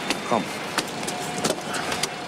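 Steady city street traffic noise with a few short sharp clicks, and a thin steady tone that sets in about halfway through.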